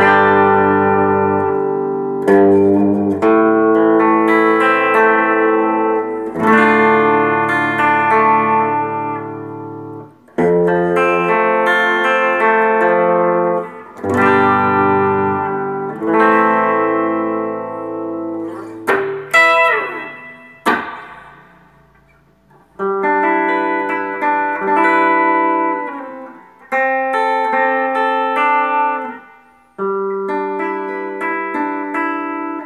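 Ibanez ARZ200 gold-top electric guitar being played: ringing chords and single-note phrases, let sustain and broken by short pauses, with a quick slide down the strings about two-thirds of the way through.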